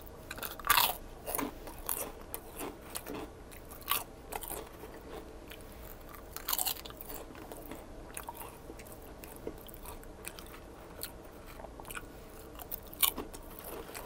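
A person biting into and chewing a potato chip close to the microphone. A loud crunch comes about a second in, then a run of smaller crunches, another burst of crunching a little past the middle, and only sparse soft chewing clicks after that.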